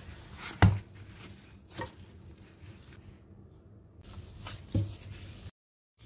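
Dough being kneaded by hand in a plastic basin, the hands covered in plastic bags: a few dull thumps as the dough is pressed and slapped, the loudest about half a second in and two more close together near the end.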